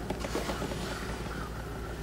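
Quiet handling of an oak-finish wooden jewelry box as its hinged side doors are swung open, over a steady low hum.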